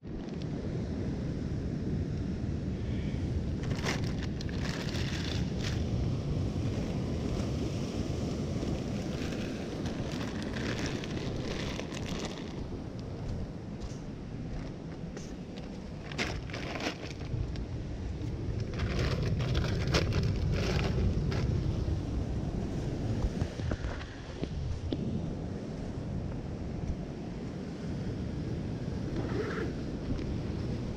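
Wind blowing on the microphone over a low rumble of surf against the rocks, with scattered bursts of rustling and crinkling from a plastic bag being handled and footsteps scuffing on rock.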